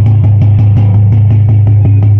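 Loud music over a PA loudspeaker for the drill display: a steady deep drone with a fast, even drumbeat.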